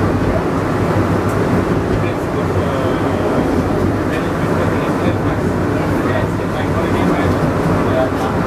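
Penang Hill funicular car running on its rails as it climbs, a steady rolling rumble heard from inside the car.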